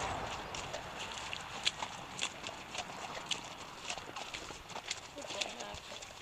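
A grey pony's hooves on a muddy track, with sharp clicks about every half second over a steady hiss.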